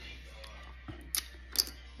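Two sharp plastic clicks about half a second apart from a key fob's plastic casing as it is pried open with a small screwdriver.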